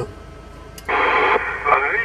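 CB radio receiver (President Lincoln II+ on channel 19 AM) opening up as another station keys its transmitter. After a short low stretch there is a faint click, then a sudden burst of hiss about a second in. The distant operator's voice follows through the speaker, narrow and tinny.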